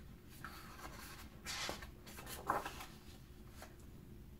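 Paper page of a hardcover picture book being turned, a few soft rustles and swishes of the sheet, the loudest about a second and a half in and again near the middle.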